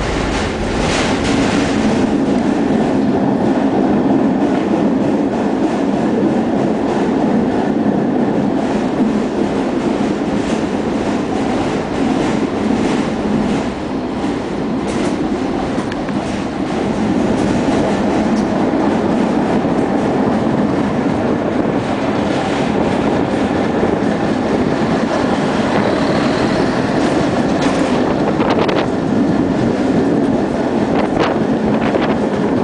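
Tatra tram heard from inside the passenger car while under way: a steady running rumble of motors and wheels on the rails. It grows louder quickly at the start, then holds steady.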